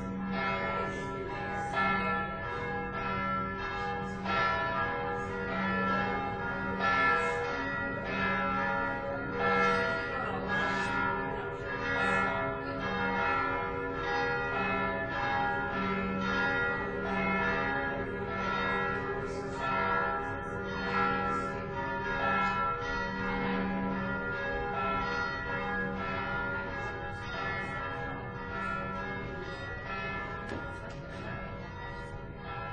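Church bells ringing, with a fresh strike about once a second over long, overlapping ringing tones.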